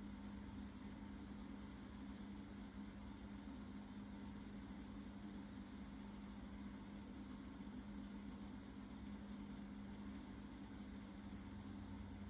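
Quiet room tone: a steady low hum with a faint even hiss, and no other events.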